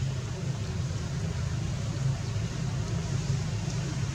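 Steady low rumble with a faint hiss behind it, unchanging and with no distinct events.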